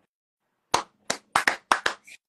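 Hands clapping, about six quick claps starting about three quarters of a second in and coming a little faster towards the end.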